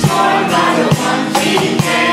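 Worship song sung by women into microphones over acoustic guitar, with a low beat about once a second.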